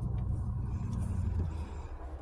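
Steady low hum of a parked vehicle's engine idling, heard from inside the cabin.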